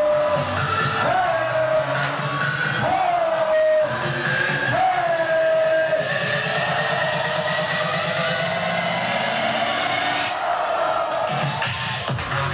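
Loud electronic dance music from a DJ set over a nightclub sound system: a swooping synth note repeats about every two seconds. It then gives way to a long held note over a fast roll, a build-up whose top end drops out shortly before the end.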